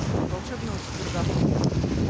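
Wind buffeting a phone's microphone, a rough low rumble, with brief faint snatches of a woman's voice.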